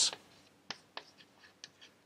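Chalk writing on a blackboard: a series of short, sharp taps and scratches as letters are written.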